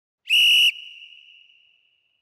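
One short, loud whistle blast of about half a second, followed by a ringing tail that fades over about a second: the interval timer's warning that ten seconds of the rest period remain.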